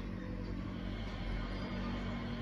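A quiet, steady low hum, in a lull between louder passages of background music.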